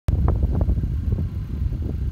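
Loud, uneven low rumble of outdoor background noise.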